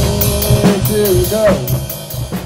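Band jam of drum kit, bass guitar and Korg synthesizer: quick, regular drum strokes over a bass line, with a held tone that bends up and down from about a second in. The music starts fading near the end.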